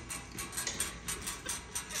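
Irregular small crunching clicks of monkeys chewing cashews.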